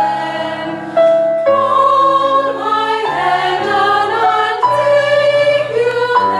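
Chamber choir singing a Broadway show tune in close harmony, with sustained chords that change about once a second.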